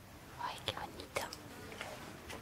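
Faint whispering from a person close by, with a few short sharp clicks.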